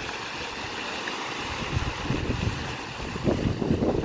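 Fountain jets splashing into a large basin, a steady hiss of falling water, with wind buffeting the microphone from about halfway through.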